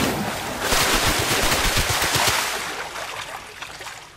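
Anime battle sound effect: a loud rush of noise with many rapid low rumbling thuds, dying away over the last second and a half.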